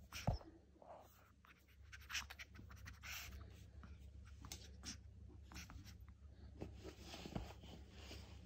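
Faint scratching and rustling of a small dog shifting its paws and body on a fabric cushion, with a soft thump just after the start and a smaller one near the end.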